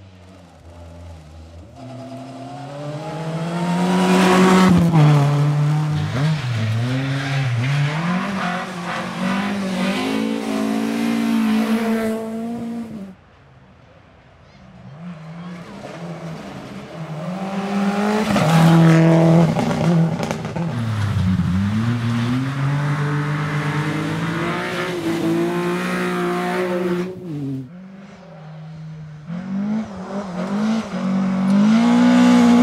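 Two rally cars passing in turn on a gravel stage, a Ford Fiesta and then a flat-four Subaru Impreza, each revving hard with its pitch rising and falling through gear changes and lifts for the corner. The first cuts off suddenly about 13 seconds in. A third car starts to be heard just before the end.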